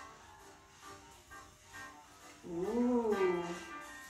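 Quiet background music, and about two and a half seconds in a pet's single drawn-out cry lasting about a second, rising and then falling in pitch. The cry is louder than the music.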